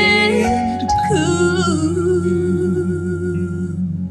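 A male and a female voice singing a slow duet over acoustic guitar. About a second in they settle on a long held note with vibrato, which carries on until near the end.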